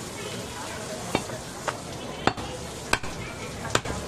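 Large butcher's knife chopping goat meat on a wooden log chopping block: about six sharp knocks at irregular intervals, the last two in quick succession, over a steady background hiss.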